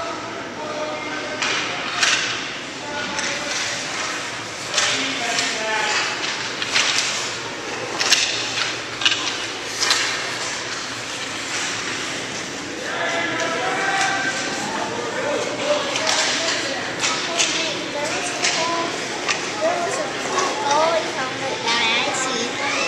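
Youth ice hockey play in an indoor rink: repeated sharp clacks and knocks of sticks and puck on the ice, with voices shouting, echoing around the arena.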